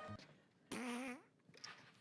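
Mostly near silence, broken about halfway through by one short pitched, voice-like sound lasting about half a second that rises slightly in pitch at its end.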